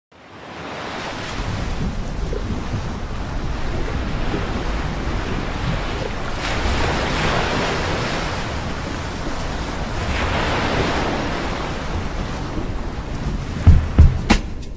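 Wind on the microphone over the rush of sea waves, fading in at the start and swelling twice. A sudden loud thump comes near the end.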